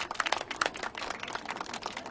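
A group of people applauding by hand, many quick overlapping claps.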